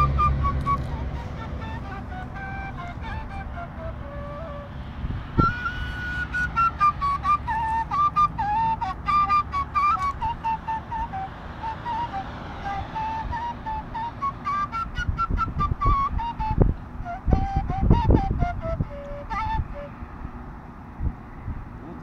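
Kaval, the Bulgarian end-blown flute, played solo: a slow, wandering melody of held and moving notes in the instrument's middle register. A few low thumps come in the second half.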